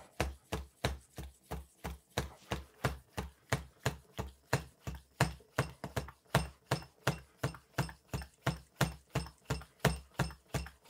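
Hand shock pump worked in quick, short, even strokes, about three a second, each stroke a brief knock and puff of air. It is pumping a Fox shock's IFP chamber with air through a nitrogen needle, with the pressure nearing 450 psi.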